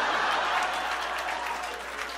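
Audience applauding after a punchline, the clapping slowly dying down.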